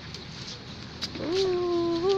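A small dog letting out one long whining call at a nearly steady pitch, starting just past the middle and lasting about a second and a half.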